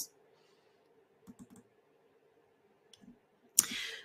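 A pause in a talk: a few faint computer clicks as the presenter advances the slide, then a short breathy hiss near the end, an intake of breath before she speaks again.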